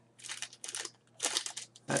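Small plastic packet of earbuds crinkling as it is turned in the fingers: two short spells of crackling rustle, about half a second in and again past the middle.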